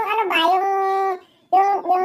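A high voice singing: one long, steady held note, then after a short break a few shorter sung notes near the end.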